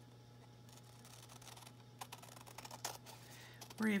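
Scissors cutting vintage book paper: very quiet at first, then a few sharp snips with light paper rustle in the second half.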